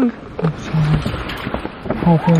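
Handling noise from a camera being moved and set in place inside a car: rustling with a few small knocks.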